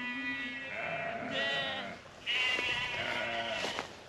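Sheep bleating: about three long calls, one after another.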